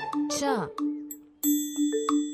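A bright bell-like chime strikes about a second and a half in and rings on, over a held note of background music.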